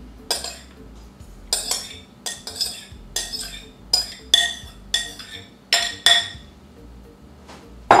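Metal spoon knocking against a glass mixing bowl while scooping out a meat mixture: a dozen or so sharp, ringing clinks over about six seconds, then they stop.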